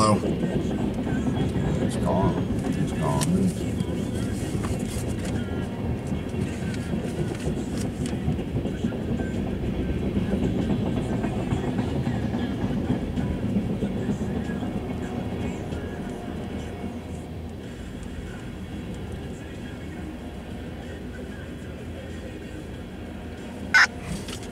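Freight train of tank cars rolling slowly past, a steady low rumble of wheels on rail heard from inside a car. It eases off a little in the second half.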